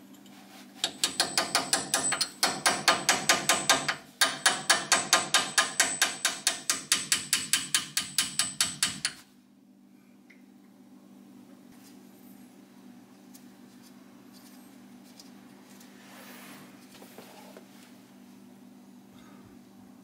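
Ratchet wrench clicking in rapid, even strokes as it unscrews the 10 mm hex drain plug of a front differential, with two brief pauses. The clicking stops about nine seconds in, leaving only a faint low hum.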